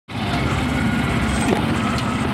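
Motorcycle engine running steadily, a low, evenly pulsing hum.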